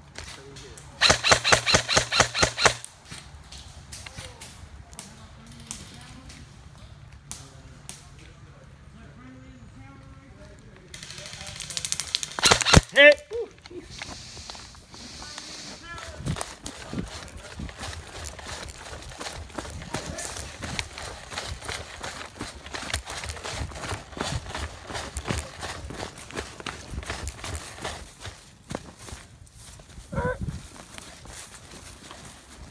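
Airsoft gun firing a rapid full-auto burst of about two seconds, with a second loud burst and a voice about halfway through. After that, running footsteps through leaf litter and grass.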